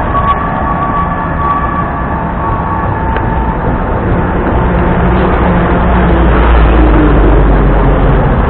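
Dense city road traffic passing close by: engine and tyre noise, with a steady high tone over the first three seconds and a deep rumble building up in the second half.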